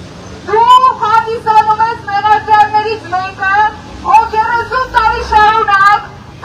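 A woman shouting through a handheld megaphone, her amplified voice loud and high-pitched, in two long phrases with a short break about four seconds in.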